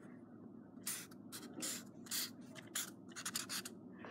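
Sheets of notebook paper being handled and shuffled: a faint run of short, irregular rustles.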